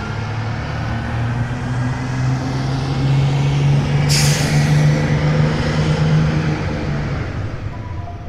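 Bus engine running steadily as the bus drives by, swelling toward the middle and easing off near the end, with a short hiss of air brakes about four seconds in.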